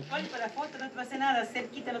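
Quiet, scattered talking from several people, softer than the loud voices just before; no distinct non-speech sound stands out.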